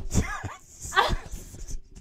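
A woman laughing in high-pitched, squealing giggles, with two louder bursts about a second apart.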